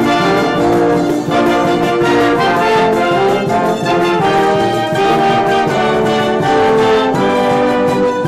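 A live bailinho band of trumpets, trombone, tuba, saxophones, clarinets and acoustic guitars playing an instrumental passage, the brass carrying the tune in long held notes.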